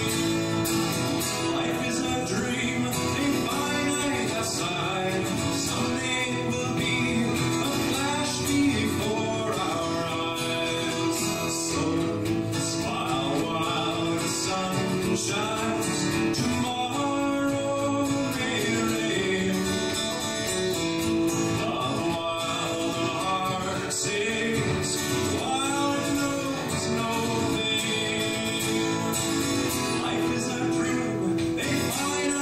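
Male voice singing a country-folk song, accompanied by a strummed steel-string acoustic guitar.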